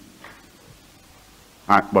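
A man's preaching voice pauses, leaving only faint background hiss, then he starts speaking again near the end.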